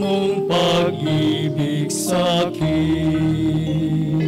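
A woman cantor singing the responsorial psalm, a slow chant-like melody, over sustained instrumental chords. Sung phrases come about half a second in and again about two seconds in, and a deeper held note enters after about two and a half seconds.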